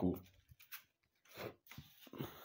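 A pause in a narrator's voice-over: the end of a spoken word, then near quiet with a few faint mouth clicks and a short intake of breath before the next sentence.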